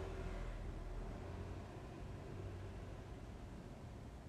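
Quiet room tone: a faint steady low hum with light hiss, slowly fading a little.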